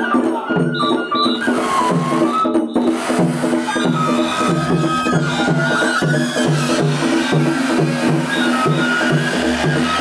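Japanese festival hayashi music: a high bamboo flute melody over a held lower tone and a steady drum beat of about two strokes a second.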